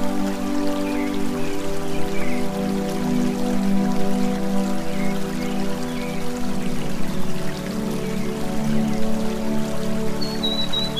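Slow new-age background music of held synth-pad chords, with the chord changing about two-thirds of the way through, layered over a steady rain-like water sound and a few faint short chirps.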